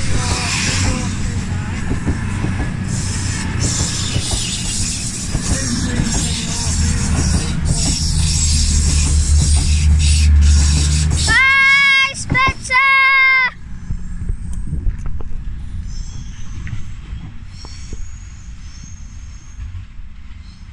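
CrossCountry Class 220 Voyager diesel-electric units accelerating out of the station, their underfloor diesel engines running hard with a low drone that grows louder for the first ten seconds as the coaches pass. About eleven seconds in come three short, loud, flat-pitched horn notes. The train sound then fades as it pulls away.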